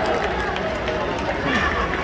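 Spectator crowd in an indoor sports arena: a steady murmur of many voices with a few individual voices rising out of it now and then.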